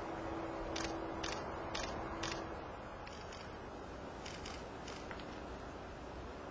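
Camera shutter firing: four sharp clicks about half a second apart, then a few fainter clicks near the end, over steady outdoor background noise.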